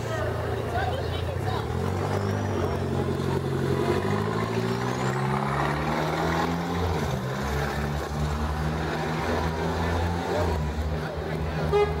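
A motor vehicle's engine running on the street, its note rising over several seconds, dropping about seven seconds in, then climbing again.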